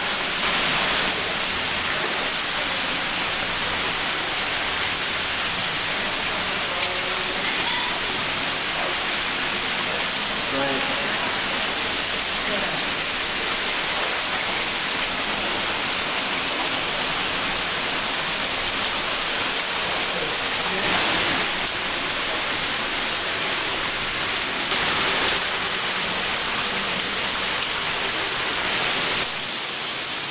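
Underground cave stream running steadily, a constant rushing of water that changes abruptly near the end.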